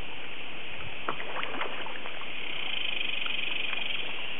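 Channel catfish breaking the pond surface as they feed on floating fish food: a few small, sharp splashes and slurps clustered about a second in, over a steady hiss. A pulsing high-pitched buzz swells over the last second.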